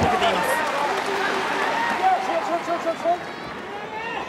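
Voice-dominated: a man talking over steady arena crowd noise, with no distinct non-speech event standing out.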